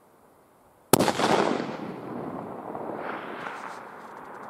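A single .300 Winchester Magnum rifle shot about a second in: one sharp report followed by a long rolling echo that fades over the next few seconds.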